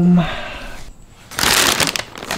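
A paper takeout bag rustling and crinkling as it is grabbed, a burst of about half a second near the end.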